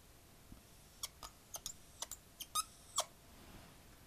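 Dry-erase marker squeaking faintly on a whiteboard as the lines of a square-wave pulse are drawn: about nine short squeaks, bunched between one and three seconds in.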